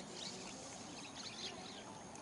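Scattered short, high-pitched animal chirps over a steady outdoor background hiss.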